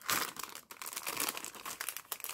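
Clear plastic packaging around a set of metal cutting dies crinkling and crackling under the fingers as it is worked at to get it open.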